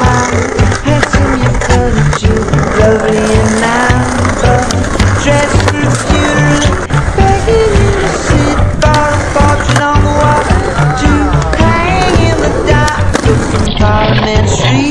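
Music with a steady beat and a melody, over skateboard wheels rolling on concrete and the clack of the board on the skatepark surface.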